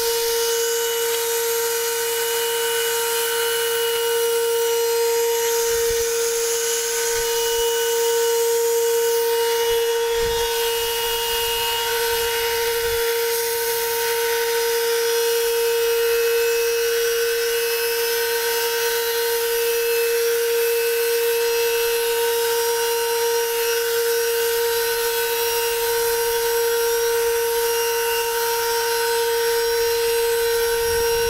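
Homemade blower built from an old vacuum cleaner motor running steadily with a constant high whine, air rushing out of its plastic-bottle nozzle.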